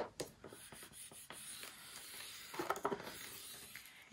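Scoring stylus drawn along a groove of a scoring board, creasing a cardstock panel: a faint, scratchy rub starting about a second in.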